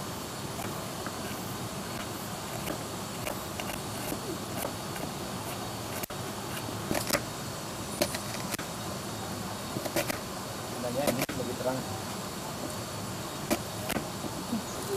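Kitchen knife cutting vegetables on a wooden chopping board: scattered sharp knocks of the blade hitting the board, most of them in the second half, over a steady background hiss.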